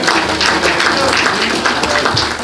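A room of seated people applauding: a short round of steady clapping, with a few voices mixed in.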